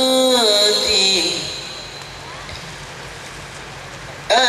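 Qasidah singing over a sound system: a voice holds a note and then slides down, ending about a second in. A pause of steady low background noise follows.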